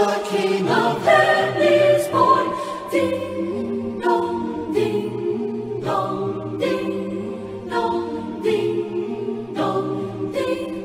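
Mixed SATB choir singing unaccompanied in close harmony. From about three seconds in, the voices sing short chords at a steady pulse.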